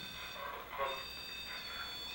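A REM-Pod ghost-hunting sensor sounding its electronic alarm: a steady high-pitched tone of several pitches together, which shifts about halfway through. It sounds when something disturbs the field around its antenna, and the investigators take it as a yes from a spirit.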